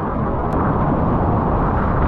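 A surfboard riding through water with wind buffeting an action camera's microphone: a loud, steady rush of noise, heaviest in the lows, swelling slightly near the end. There is a brief click about half a second in.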